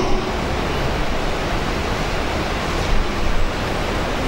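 Steady, even rushing noise of a floor-standing air-conditioning unit and an electric fan running in the room, with no voice over it.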